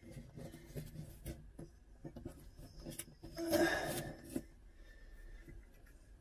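Faint rustling and rubbing as wires and a small LED light fitting are handled and pushed up into a ceiling cavity, with a few light clicks and a louder scrape about three and a half seconds in.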